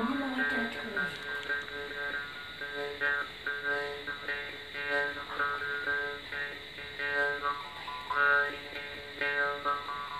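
Balochi chang (jaw harp) played solo: a steady twanging drone plucked in a quick rhythm, the player's mouth shifting the overtones to pick out a melody.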